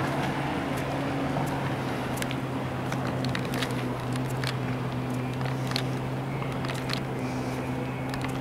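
A steady, low motor hum with a constant pitch, with scattered light clicks and crunches over it.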